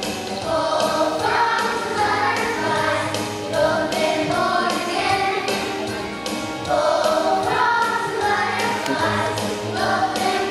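A group of young children singing a song together over musical accompaniment with a steady beat.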